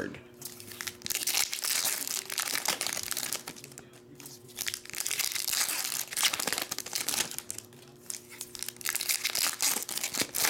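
Foil trading card pack wrappers crinkling and tearing as they are handled and opened by hand. The crackling comes in bursts, with short lulls about four and eight seconds in.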